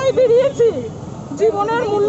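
A woman speaking in a high-pitched voice in short phrases, with a brief pause about a second in, over a steady low background rumble.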